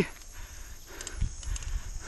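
Mountain bike rolling down a dirt singletrack, with irregular low knocks and rattles as it goes over bumps.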